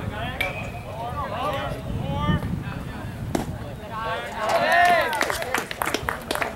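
Voices calling and shouting across a baseball field, in several drawn-out calls. One sharp crack comes about three and a half seconds in, and a run of quick clicks follows near the end.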